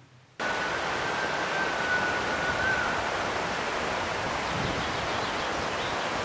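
Steady rushing of a fast mountain river running over rapids, cutting in abruptly about half a second in.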